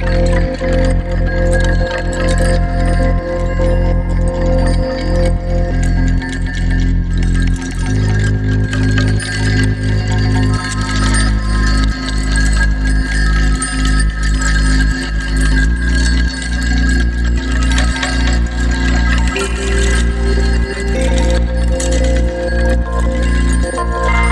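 Electronic music played live: a drum loop with a steady beat under held keyboard chords and deep low notes that change about every eight seconds. A sample is looped through a Chase Bliss MOOD granular micro-looper pedal with delay and reverb on.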